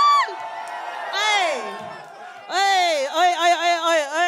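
A voice shouting through a PA microphone over a cheering crowd. A long held shout breaks off just after the start, a falling whoop comes about a second in, and a run of rising and falling shouted calls starts at about two and a half seconds.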